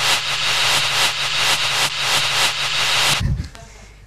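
Audience applauding with some laughter, a dense patter of claps that cuts off suddenly about three seconds in.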